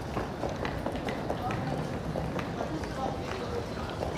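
Busy airport terminal hall: indistinct chatter of passing travellers and regular footsteps on a tiled floor as the camera holder walks.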